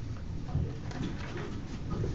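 Chairs creaking and scraping, with shuffling and a few light knocks, as a room of people sits down.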